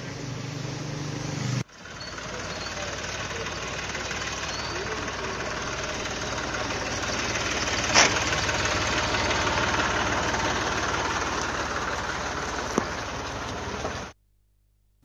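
A truck engine running steadily, with a sharp knock about eight seconds in.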